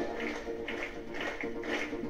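A quiet break in a live schlager band's song: the full band drops out, leaving only faint, sparse musical sounds between sung lines.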